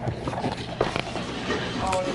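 Indistinct voices in a busy room, with a few light knocks from handling.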